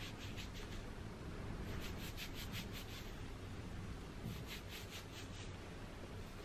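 Fingertips rubbing a liquid herbal shampoo into damp hair and scalp: three short bouts of quick scrubbing strokes, about five a second, one at the start, one about two seconds in and one about four seconds in.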